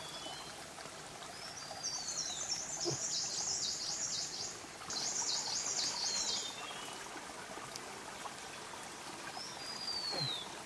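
Forest birds singing. The loudest is a fast, high-pitched, repeated warbling song in two runs of about two seconds each, and short down-slurred whistles come near the start and again at the end, all over a steady background hiss.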